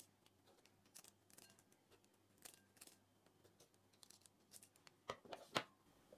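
Kitchen scissors snipping dried red chillies, faint and scattered, with a few louder clicks about five seconds in.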